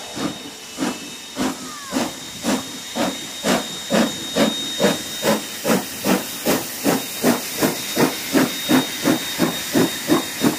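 Steam locomotive pulling away, its exhaust chuffs coming evenly over a hiss of steam and quickening from about two to nearly three a second as it gathers speed.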